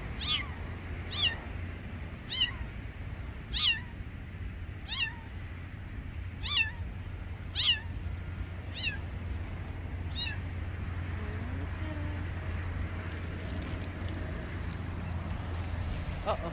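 Stranded kitten mewing: about nine short, high-pitched cries, each falling in pitch, roughly a second apart, stopping about ten seconds in.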